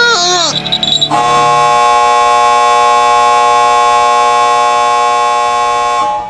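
A buzzer sounds one loud, unchanging tone for about five seconds, starting about a second in: the time-up signal that ends the exam.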